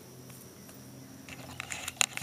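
Faint steady background hum with a thin, steady high tone. From about a second and a half in come soft clicks and rustles as the camera is picked up and handled.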